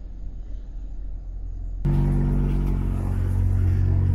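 Low outdoor rumble, then an abrupt change about two seconds in to a louder, steady low hum of the van's engine idling.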